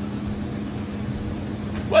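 Steady low mechanical hum holding one constant droning tone, the running background noise of workshop machinery or ventilation.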